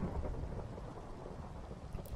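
Faint, steady rain-and-thunderstorm background ambience: an even hiss of rain with a low rumble of thunder underneath.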